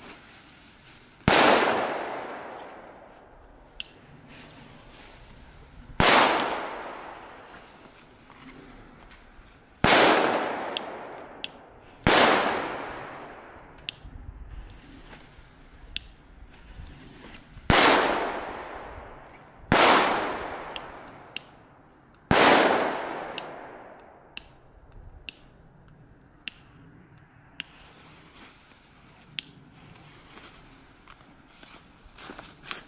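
Seven loud firecracker bangs a few seconds apart, each dying away in a long echo over about two seconds. Faint small pops and clicks fall between them.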